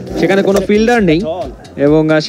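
Speech only: a cricket commentator talking, with a short pause near the end.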